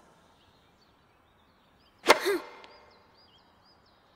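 A single sharp crack of a tennis racket striking the ball on a serve about two seconds in, followed by a short vocal sound. Faint bird chirps are heard throughout.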